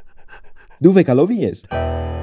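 Cartoon dog panting in quick, short breaths, about six a second. About a second in, a voice with a wobbling, swooping pitch cuts in, and near the end a steady buzzing tone starts.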